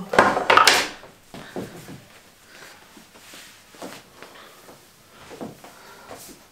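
A loud scraping rustle lasting about a second, then scattered soft knocks and rustles of things being handled.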